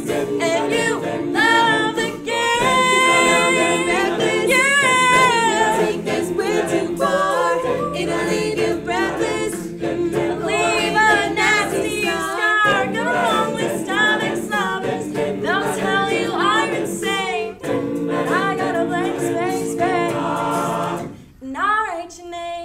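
Mixed a cappella group singing in close harmony, a female lead voice over sustained backing chords and beatboxed vocal percussion; the song cuts off sharply near the end.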